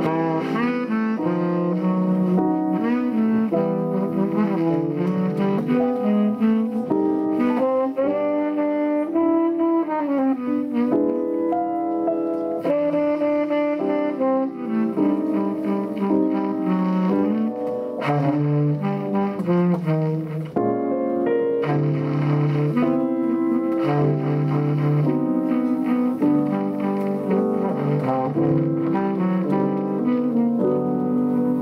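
Tenor saxophone playing a flowing jazz melody line with piano accompaniment underneath.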